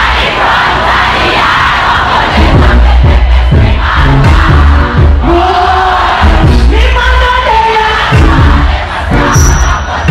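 Large concert crowd cheering and singing along over loud dancehall music played through stage speakers, with a heavy, pulsing bass beat. Held sung notes come through in the second half.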